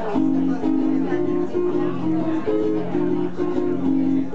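Acoustic guitar playing a steady rhythmic pattern of repeated chords, coming in right at the start.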